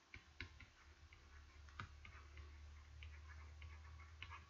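Near silence with faint, irregular clicks of a stylus tapping on a pen tablet while handwriting, over a faint low hum.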